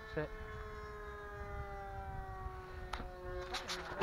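Electric motor and propeller of an E-flite Scimitar RC plane, running on a four-cell LiPo, giving a steady whine that slowly falls in pitch.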